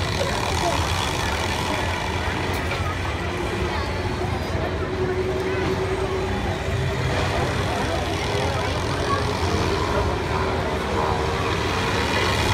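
Steady mechanical drone of a carnival swing ride running, with a steady hum that sets in about four seconds in, under faint voices of people nearby.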